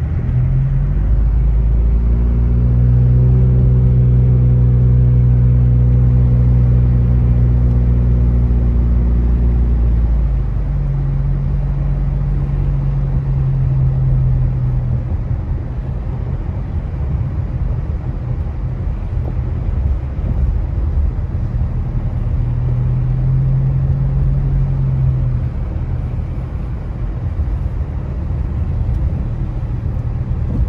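Car engine running steadily under load, heard from inside the cabin, strongest for the first ten seconds and then easing to a lower hum that comes and goes. A steady rush of tyres on a wet road and the defroster fan runs throughout.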